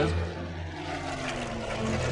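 Supermarine Spitfire's propeller-driven piston engine running steadily in flight, its pitch slowly falling.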